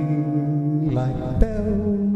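Solo bossa nova on an archtop guitar, chords ringing under long held notes, with one note gliding down about halfway through, rather like a wordless sung tone.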